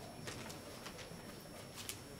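Faint room noise of an audience settling into auditorium seats: a low murmur with a few small clicks and rustles, the sharpest near the end.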